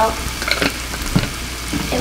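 Ground beef frying in oil in a skillet: a steady sizzling hiss, with a few light clicks about half a second and a second in.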